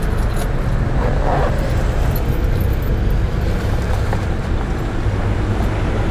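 Steady low rumble of a motor vehicle, with a bunch of keys jangling in hand.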